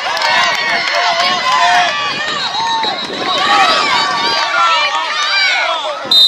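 Many high-pitched children's voices shouting and chattering at once, overlapping into a loud babble.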